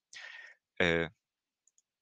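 A short breath and a brief voiced hesitation sound from the lecturer, then two faint clicks of a computer mouse near the end.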